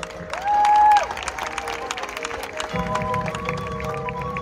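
A high school marching band playing. About half a second in, a single loud note slides up, holds for about half a second and drops away, over rapid percussion clicks. Lower sustained chords fill in during the second half.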